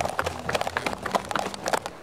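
Running footsteps and knocks from a jostled handheld camera: a quick, irregular run of knocks and scuffs.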